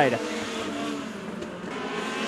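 Pack of Legend race cars with Yamaha motorcycle engines running around a short oval, heard as a steady engine drone.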